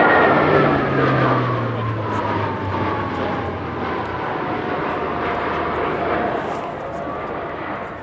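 An Alenia C-27J Spartan's twin Rolls-Royce AE 2100 turboprops and propellers pass low and close, loudest at the start. Their tones slide steadily down in pitch as the aircraft goes by and climbs away, and the sound fades a little towards the end.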